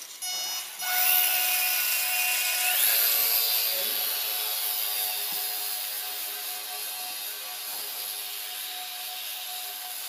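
E-flite micro 4-Site RC biplane's small electric motor and propeller whining. It spins up about a second in, revs up to a higher whine near three seconds in, then holds steady and slowly fades as the plane flies off.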